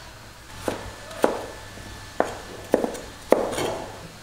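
Chinese cleaver cutting potato on a thick round wooden chopping block: about six sharp knocks of the blade on the board, unevenly spaced, the loudest a little past three seconds in.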